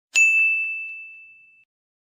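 A single bright bell-like ding sound effect: one struck high tone that rings and fades away over about a second and a half.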